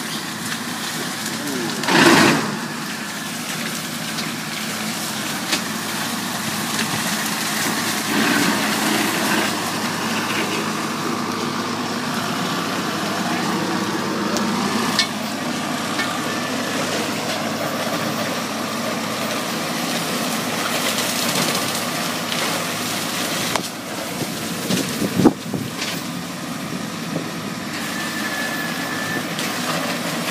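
Tractor engine running steadily while mowing through tall grass, with a loud short burst about two seconds in and a sharp knock near the end.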